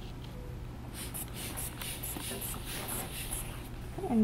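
Faint air hissing from an aneroid blood pressure cuff's rubber inflation bulb and air-release valve as the valve is worked closed: a row of short hisses over about two seconds, starting about a second in.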